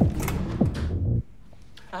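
Tense film score: a loud low drone with a downward swooping tone that repeats about every half-second or so, cut off abruptly a little over a second in. A man says "Ah" near the end.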